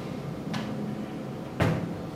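Two clicks from the choke lever on a small two-stroke earth-auger engine being worked by hand: a light one, then a louder, sharper one near the end. The engine is not running.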